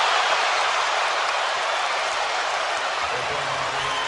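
Arena crowd cheering, a steady wash of crowd noise during a fast-break dunk.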